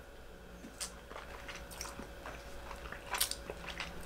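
Faint mouth sounds of red wine being sipped and worked around the mouth, with a few soft, scattered clicks, a little thicker around three seconds in, as the wine glasses are set down on the table.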